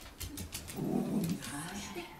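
Miniature schnauzer giving a short, low, rough grumbling vocalization about a second in, with a few faint clicks around it.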